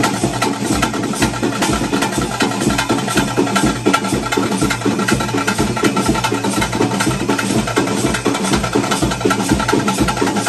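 Drum ensemble playing a fast, steady rhythm with other instruments, the kind of music that accompanies a daiva kola ritual.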